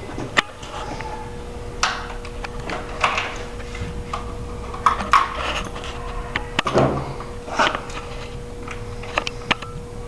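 Scattered clicks and knocks, a second or two apart, from a Barnett Quad 400 crossbow being handled as it stands on its front stirrup on the floor.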